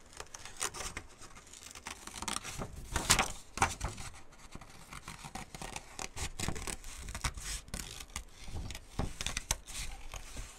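Small scissors snipping through printed paper, cutting roughly around a flower shape: many quick, irregular snips with the sheet crinkling as it is turned, the loudest about three seconds in.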